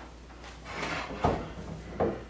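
Hands moving things on a small wooden folding table: soft rustling, then a single sharp knock of an object set against the wood a little past the middle.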